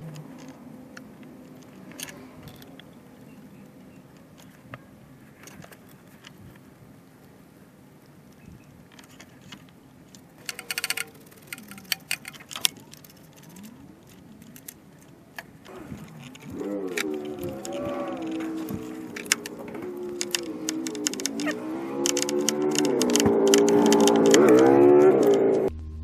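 Ratchet wrench clicking in short runs as the 10 mm thermostat housing bolts are tightened, busiest about ten to thirteen seconds in. From about sixteen seconds, music with a moving melody comes in and grows louder, becoming the loudest sound toward the end.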